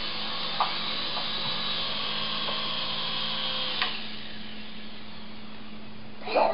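Small infrared-controlled toy Apache helicopter's electric motors and rotors whirring steadily in flight, with a light tap about four seconds in, after which the whir runs slightly quieter.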